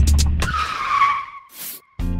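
Tyre-screech sound effect: a car's tyres squealing in a skid, falling slightly in pitch and fading over about a second. It starts as a music beat ends and is followed by a brief hiss.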